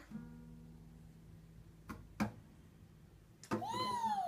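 Acoustic guitar strings ringing on after a strum and slowly fading, then two sharp knocks about two seconds in. A child's high voice cries out with a rising-and-falling pitch near the end.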